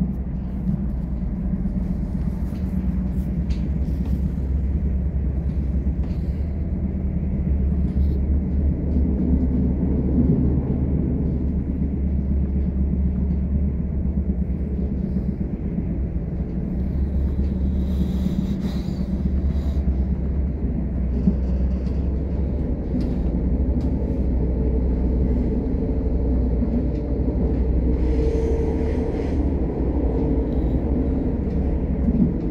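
Passenger train running at speed, heard from inside the carriage: a steady low rumble of wheels on the rails.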